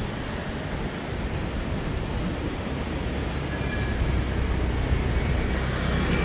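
Steady rushing wind and road noise on a helmet or body camera microphone, with a low hum from the Yamaha Mio M3 scooter's engine underneath, slowly growing louder.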